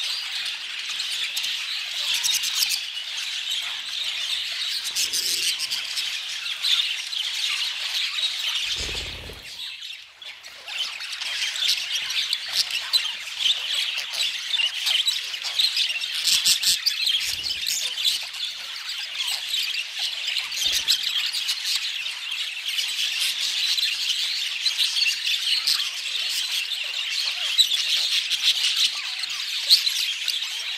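A flock of exhibition budgerigars chattering together: a dense, continuous warble of chirps and squawks. It thins out briefly about nine seconds in, just after a dull low bump.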